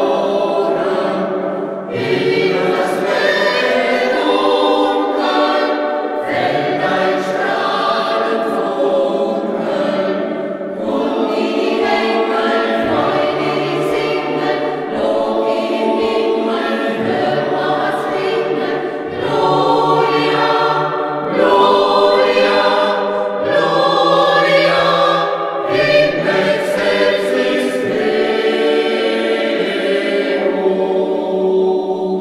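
Mixed church choir of women's and men's voices singing, with long held notes in phrases of a few seconds.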